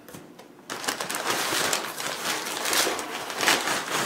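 Packaging crinkling and rustling as it is handled, starting under a second in as a dense crackle of small crinkles.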